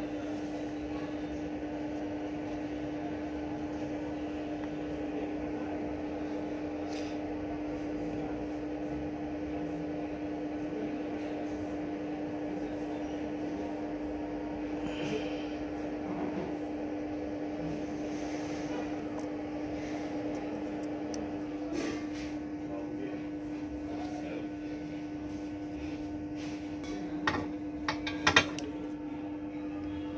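A steady electrical hum, one held low tone with a faint hiss under it, with a few sharp clicks and knocks near the end.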